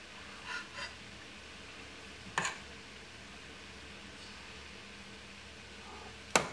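A metal serving spoon knocking once, sharply, on a ceramic plate about two and a half seconds in as brown rice is spooned onto it, with a couple of faint soft scrapes earlier, over a low steady room hum.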